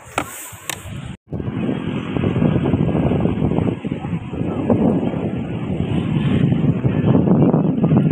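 Wind buffeting the phone's microphone on an open beach: a loud, steady rumbling noise. It begins abruptly just over a second in, after a brief gap.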